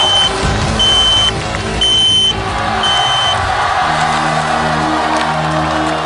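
Electronic countdown-timer beeps, one short high beep a second, over loud stage music. The beeps stop about three seconds in, and the music changes to long held chords.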